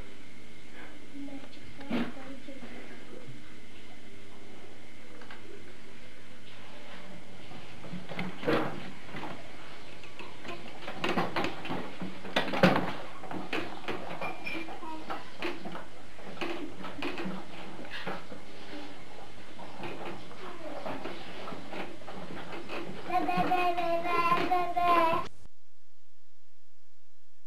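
Children's voices in a small room, indistinct, with scattered knocks and bumps over a steady background hum. Near the end a child's high voice calls out, and then the sound cuts off suddenly.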